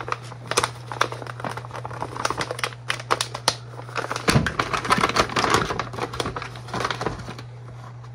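Plastic packaging crinkling and rustling with many small irregular clicks and taps as a calcium supplement container is opened and handled, over a steady low hum.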